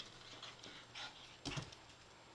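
A Shih Tzu scrambling about on bedding, faint, with a couple of short dog sounds and a soft thump about one and a half seconds in.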